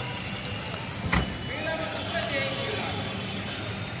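Car engines running as vehicles move close by, with voices in the background and a single sharp bang about a second in.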